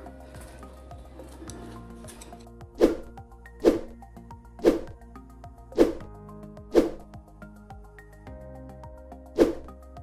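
About six sharp plastic knocks and snaps, roughly a second apart with a longer gap before the last, as a scooter's plastic front body panel is pressed back into place by hand, over steady background music.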